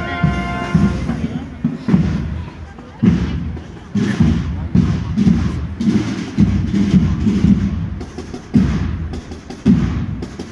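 A processional marching band's drums beating a walking cadence, strikes roughly once a second, as the band's wind tune dies away in the first second, with crowd voices close by.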